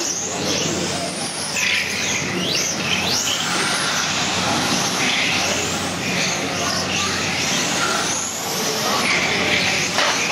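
Several 1/12-scale electric RC cars racing on a carpet track, their motors making high whines that rise and fall in pitch, overlapping one another as the cars accelerate and brake through the corners.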